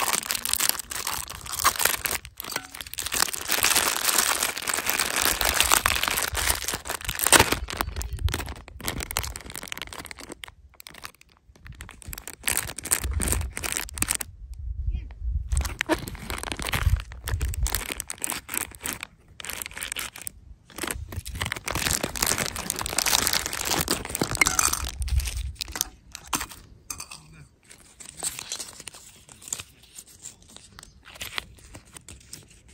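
Thin clear plastic wrappers crinkling and tearing as small toys are unwrapped by hand, in irregular bursts with brief pauses. A low rumble comes in around the middle.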